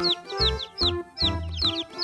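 Baby chicks peeping over background music: short, high, downward-sliding peeps repeating about three times a second.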